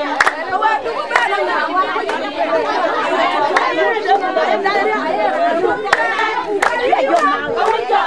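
A crowd of women's voices talking and calling out all at once, with a few scattered sharp hand claps.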